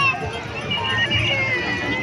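Children's high-pitched calls and drawn-out squeals over a steady wash of river water and the chatter of a crowd of bathers.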